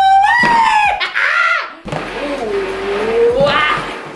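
A man's long held "woo!" shout of celebration, followed by a higher excited cry and then a drawn-out vocal sound that dips and rises in pitch.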